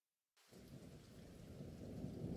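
Silence, then a faint low rumbling noise that fades in about half a second in and grows slowly louder.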